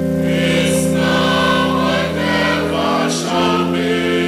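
Church choir singing in harmony, holding long chords that change about two and three seconds in.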